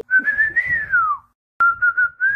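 Whistling: a single clear note that climbs a little, then slides down and fades out, and after a short gap a second, steady whistled note starts near the end.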